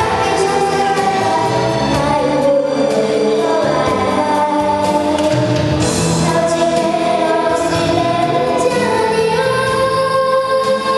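A young girl singing a sustained melody into a handheld microphone over a karaoke backing track.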